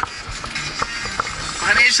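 Fire engine driving, heard from inside its cab: steady road and engine noise with a few short knocks and rattles.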